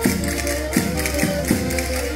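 Live Portuguese folk music: a diatonic button accordion plays held melody notes over a steady percussion beat, with a strong accent about every three quarters of a second.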